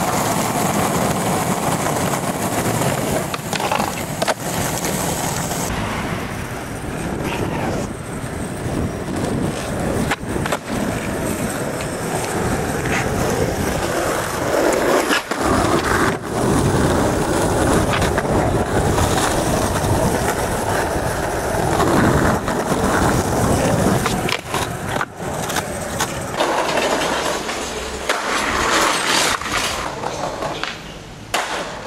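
Skateboard wheels rolling over rough street pavement. Sharp clacks from the board, tail pops and landings, break in several times across a run of short clips.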